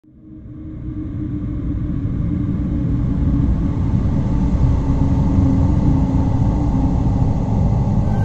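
A deep, steady rumble that fades in from silence over the first couple of seconds and then holds at a constant level.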